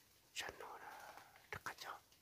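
A person whispering for about a second, followed by a few short clicks near the end.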